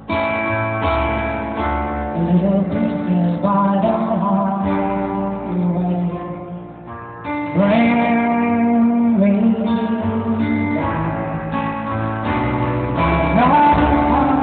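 A live band playing a guitar-led pop-rock song in a large arena. The music dips briefly just before the middle, then a sliding note rises into a loud held chord and the band carries on at full level.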